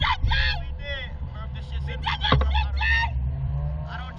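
Wind rumbling on the microphone of a camera mounted on a swinging SlingShot ride capsule, with the two riders' short laughs and exclamations over it.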